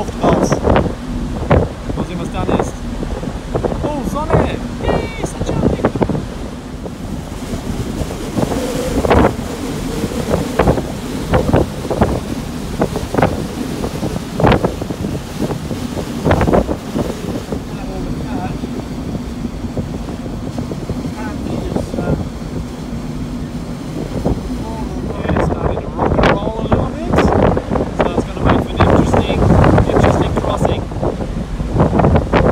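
Wind buffeting the microphone on the open deck of a moving ferry, over the rush of its churning wake, with a steady low hum from the ship.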